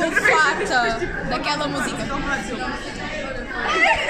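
Speech: several voices chattering close to the microphone, a little louder near the end.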